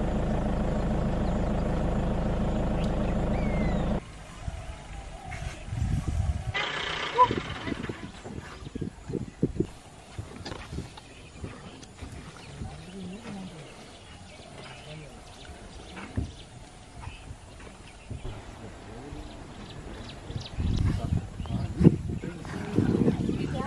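A vehicle engine idling steadily, cut off suddenly about four seconds in. After that comes a much quieter stretch of scattered small sounds.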